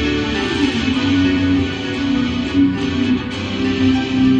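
Electric guitar, a seven-string BC Rich Warlock, playing an improvised melodic lead with long held notes over a recorded backing track.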